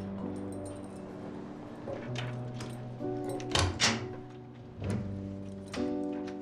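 Background music score of sustained low notes, over keys jingling and the sharp clacks of a key working a door lock, the loudest two clacks a little past halfway.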